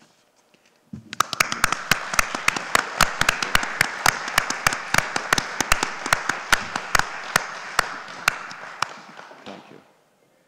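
Audience applauding, starting about a second in and fading away near the end.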